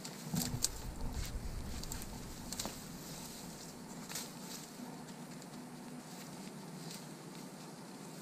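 Spruce boughs rustling and their twigs crackling as they are handled and laid onto a lean-to's pole frame, with scattered sharp clicks throughout. A low rumble in the first couple of seconds.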